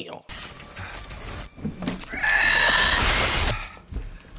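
Horror-film soundtrack: a low rumble, then a loud, shrill creature screech lasting about a second and a half, starting about two seconds in.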